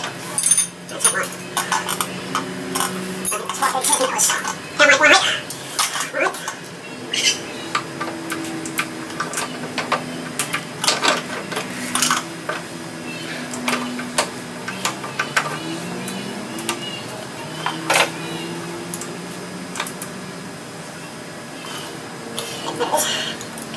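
Small steel machine parts clinking and tapping as a hex key, the feed handle and its collar are worked off the cross-feed shaft of a Churchill Redman shaper: a string of short, irregular metallic clicks.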